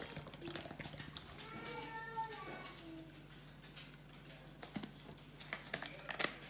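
A carton of protein shake pouring into a plastic blender cup, faint and fading after the first second. A faint voice is heard briefly about two seconds in, under a low steady hum, with a few light taps of the carton near the end.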